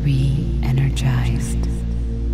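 Soft ambient sleep music over a steady low drone, with a quiet whispering voice that stops near the end.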